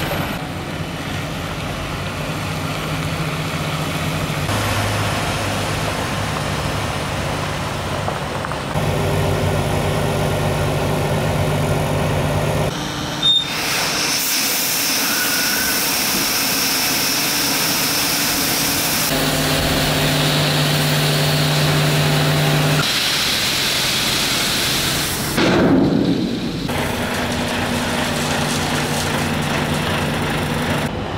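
Iveco X-Way tipper truck's diesel engine running steadily at idle or low revs across several cut shots. In the middle comes a hiss of gravel sliding off the raised tipper body, and near the end a brief louder surge.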